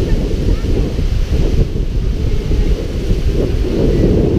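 Wind buffeting the camera's microphone in a steady low rumble, with small waves washing up on the sand behind it.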